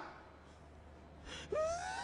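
A man's sharp intake of breath near the end, then a wailing cry that rises in pitch as he starts to sob.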